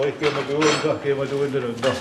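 A man's voice talking, with the words not made out, and a few light clinks among the speech.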